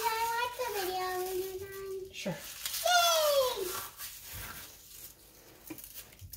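A young girl's voice: a long, high note held for about two seconds, then a shorter sound falling in pitch about a second later.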